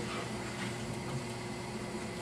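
Room tone: a steady low hum with even background hiss.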